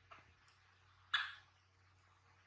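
Baby macaque giving one short, sharp squeak about a second in, with a fainter one at the start.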